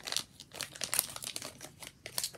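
A shiny plastic pouch crinkling as it is handled and pulled open, a run of irregular crackles and rustles.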